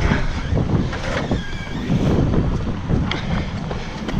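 Wind buffeting the microphone over a car engine running.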